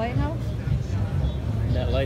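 Voices of people talking over a steady low rumble, strongest in the first half-second.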